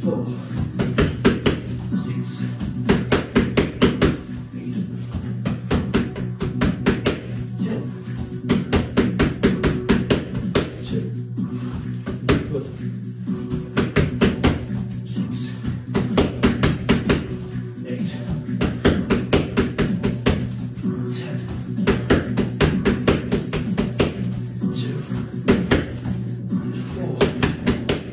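Boxing gloves striking focus mitts in quick bursts of punches every couple of seconds, over background music.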